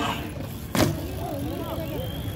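A BMX bike comes down off a metal rail onto concrete with one sharp clack about three quarters of a second in.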